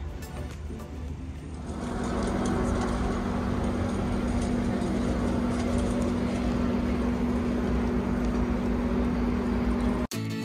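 Background music fades out in the first second or two. It gives way to a steady mechanical rumble with a constant low hum.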